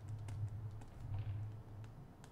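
Light, irregular clicks and taps of a stylus on a drawing tablet as a word is handwritten, over a low steady hum.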